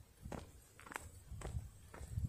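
Faint footsteps on grass and dry turf, a walking pace of about two steps a second.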